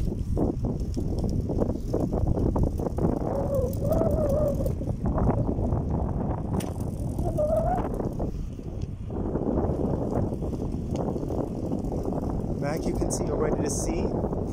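A bicycle rolling along an unpaved path: a steady rumble of tyres and wind on the microphone, with a few short wavering pitched sounds about four and seven seconds in.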